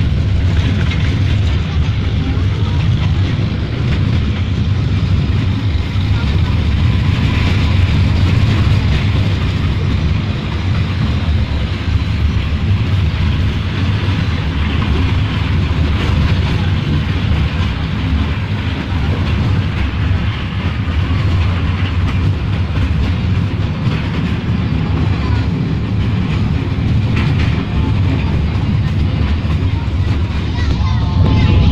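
Small tourist train running along its rail track, heard from an open passenger car as a steady low rumble.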